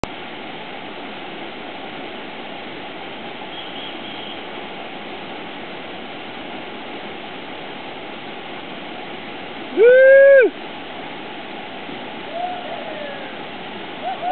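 Steady rush of a waterfall pouring into its plunge pool. About ten seconds in, a person gives one loud shout that rises and then holds, and a fainter falling call follows about two seconds later.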